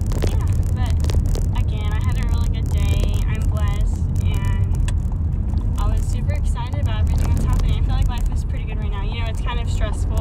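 Inside a car's cabin: a steady low rumble of the car running, with a voice heard faintly over it now and then.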